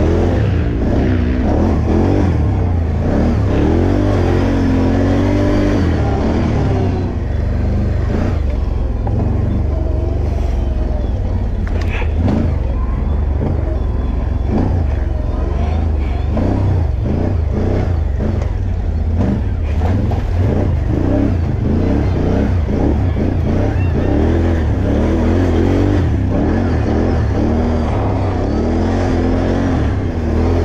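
Can-Am ATV engine running hard, revving up and falling back over and over as it is ridden through a twisting dirt trail, over a heavy constant low rumble.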